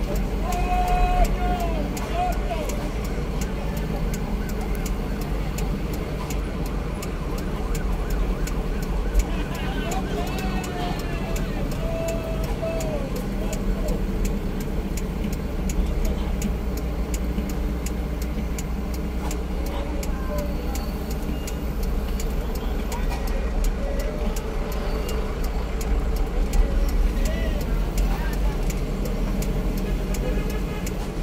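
Steady low rumble of a vehicle's engine and road noise while driving slowly along a road, with voices calling out in drawn-out tones a few times.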